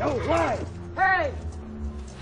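A creaking squeak repeating about once a second, each one rising and then falling in pitch, over a low steady hum.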